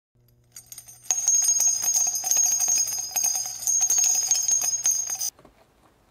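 Short intro jingle of ringing bells over a low steady hum, with many quick strikes, starting faintly and coming in loud about a second in, then cutting off suddenly about five seconds in.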